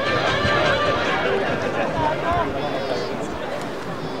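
Several overlapping voices calling and chattering outdoors, thin and distant, from around a rugby pitch.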